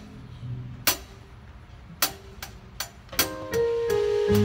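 Live band opening a song: a keyboard holds soft sustained notes while the drum kit adds sharp stick strokes, four evenly spaced about two seconds in. The band's sound grows fuller near the end.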